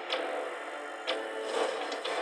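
Countdown sound effect ticking about once a second over a held chord of music.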